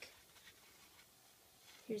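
Faint rustling and handling of a plastic fashion doll as it is turned in the hand, over quiet room tone; a girl's voice begins right at the end.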